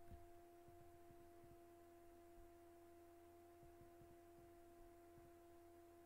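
Near silence: room tone with a faint, steady two-note hum, one tone an octave above the other, over a low rumble.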